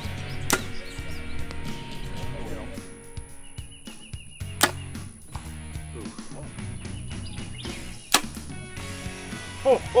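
Three sharp snaps of compound-bow arrow shots, about four seconds apart, over background music with a steady beat.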